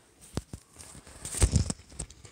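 A few light taps and knocks with faint crinkling as a small vinyl mini figure is handled on a tabletop, a couple of single taps in the first half and a quick cluster of them just past the middle.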